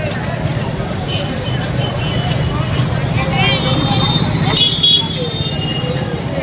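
Street traffic with motorcycle and scooter engines running steadily close by, over a background of people's voices. A few brief high, wavering chirps come in the second half, the loudest just before the end.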